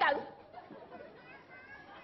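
Speech only: a man's word ends just after the start, then faint background voices in a large hall.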